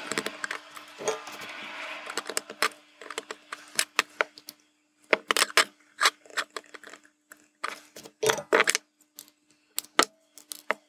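Hands handling a small circuit board and loose LEDs with wire leads. A scraping rustle in the first couple of seconds gives way to a scattered run of sharp, light clicks and taps, with small metallic rattles. A faint steady hum sits under it all.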